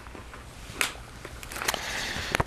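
Paper rustling as workbook pages are turned, with a sharp crackle a little under a second in and another near the end.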